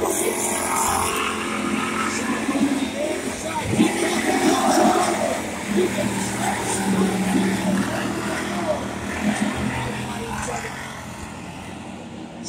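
Dirt-track hobby stock race cars' engines running at racing speed as the field circles the oval, loudest about four to five seconds in as cars pass.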